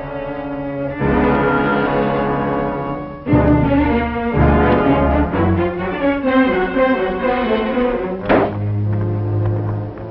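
Orchestral film score led by bowed strings: sustained chords swell about a second in, heavy low string notes come in at about three seconds, and a short bright accent just after eight seconds gives way to a held low note.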